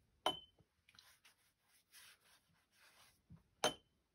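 Two sharp clinks of a paintbrush against a glass water jar, each with a brief ring, one right at the start and one near the end. Between them comes faint soft brushing as the wet brush spreads water over the watercolour paper.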